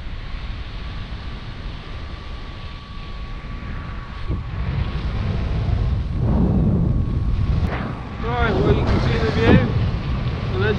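Wind buffeting the microphone of a camera on a paraglider in flight: an uneven low rumble that grows louder from about the middle on.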